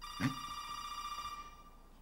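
Mobile phone ringtone: a steady electronic tone with many overtones, cutting off a little before the end.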